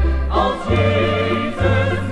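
Choir singing a Christian hymn with instrumental accompaniment, over a bass line that changes note about once a second.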